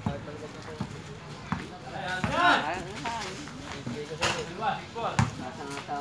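A basketball bouncing on a concrete court in a few scattered thuds, amid a laugh and players' voices.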